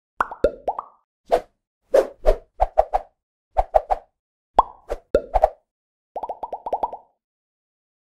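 Cartoon pop sound effects for an animated logo intro: a string of short plops in small groups, some sliding up or down in pitch, ending in a quick run of pops.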